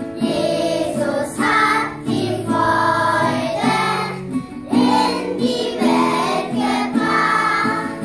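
Children's choir singing a song in unison, accompanied by a strummed acoustic guitar, in phrases of held notes with short breaks between them.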